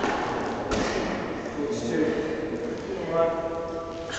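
Medicine ball thudding against a gym wall and being caught during wall-ball shots, a few sharp thuds with the first the loudest. A voice sounds briefly near the end.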